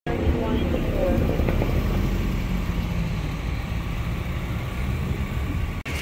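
Steady low road-traffic noise from passing vehicles, with faint voices in the first couple of seconds; the sound breaks off abruptly just before the end.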